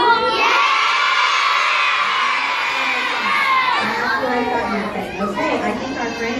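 A large group of young children shouting and cheering together, one long high-pitched yell that dies down into scattered chatter after about four seconds.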